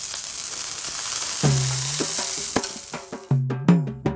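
Water sizzling on a hot iron dosa tawa as it flashes to steam, fading away over the first two or three seconds. This is the sign that the griddle is hot enough for dosa batter. From about a second and a half in, background music with a bass line and percussion strikes comes in.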